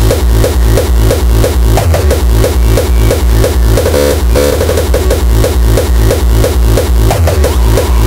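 Hardcore electronic dance track with a fast kick drum beating about three times a second, each hit sweeping down in pitch, and a brief change in the pattern about halfway through.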